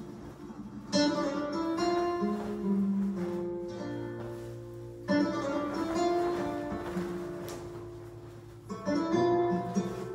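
Flamenco guitar music. Sharp strummed chords land about a second in, about five seconds in and again near nine seconds, with picked notes ringing and dying away in between.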